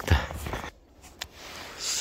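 Footsteps crunching in snow, with clothing rustle, for under a second, then cutting off. After that comes a quiet stretch with one faint click.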